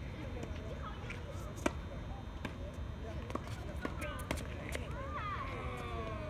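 Tennis ball being hit with rackets and bouncing on a hard court: a series of sharp pops, the loudest about a second and a half in, with voices among the players near the end.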